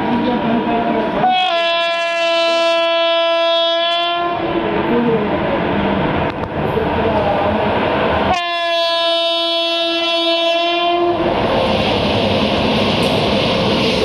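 Express train's locomotive horn sounding two long blasts of about three seconds each as the train approaches. The rush and rattle of the train running through the station at speed starts about eleven seconds in.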